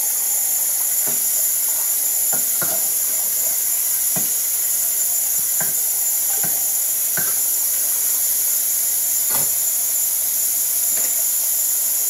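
Kitchen tap running in a steady hiss while dishes are washed, with short clinks of dishes and utensils knocking together at irregular intervals, about once a second or two.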